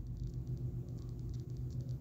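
Faint, rapid light clicks of metal tweezers picking at the edge of a thin adhesive ring's backing film, over a low steady hum.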